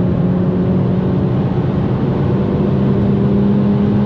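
Stage 2 tuned Audi S3 8P's 2.0-litre turbocharged four-cylinder, heard from inside the cabin, accelerating hard under full throttle through one gear at close to 200 km/h. Its steady drone rises slowly in pitch as the revs climb.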